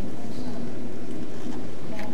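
Muffled, indistinct speech in a meeting room, buried under a steady, loud background noise.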